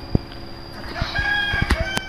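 Rooster crowing: one held call of about a second, starting about halfway through, with a few light knocks alongside.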